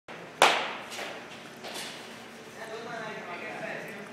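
A baseball bat striking a ball once, a sharp loud crack that echoes in a large hall, followed by two fainter knocks as the ball hits the cage.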